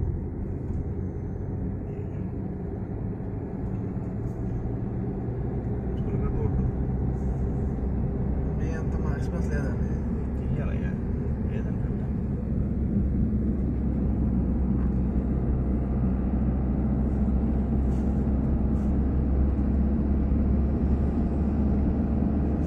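Car driving, heard from inside the cabin: a steady low rumble of engine and road noise that gets a little louder partway through.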